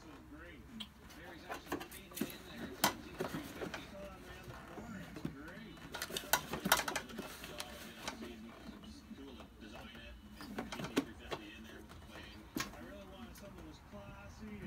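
A plastic washer-fluid reservoir being handled and positioned in an engine bay: scattered light knocks, clicks and rattles of plastic against the surrounding parts, thickest a few seconds in and again around the middle.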